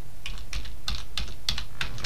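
Computer keyboard keys tapped about eight times in quick succession as a password is typed.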